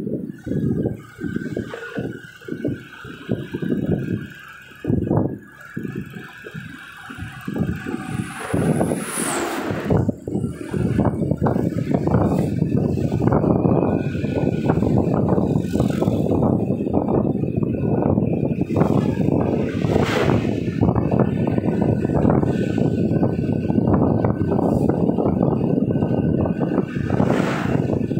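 Car driving on a road: a rumble of road and wind noise, gusty and broken in the first third, then steady and denser from about ten seconds in.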